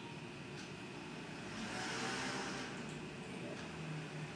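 A soft rushing noise that swells about a second and a half in and fades again by three seconds, like a vehicle passing, over a steady low hum.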